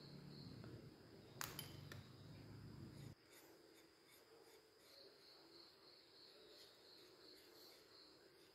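Near silence with a faint steady chirping of crickets, one light click about one and a half seconds in, and a low hum that cuts off suddenly about three seconds in.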